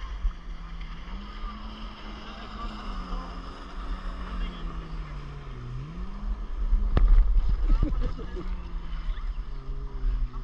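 A powered watercraft's engine drones in the distance, its pitch drifting slowly up and down, over a low rumble of wind on the microphone. About seven seconds in, a louder rush of noise swells for a second or so.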